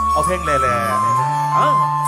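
Live band playing a Thai luk thung song: sustained keyboard notes over a held bass, with a voice briefly over the music.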